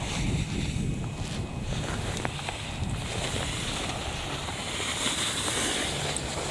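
Wind buffeting the camera microphone, a steady low rumble with a few faint ticks.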